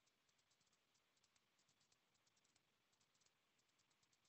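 Near silence, with faint, irregular clicks of typing on a laptop keyboard.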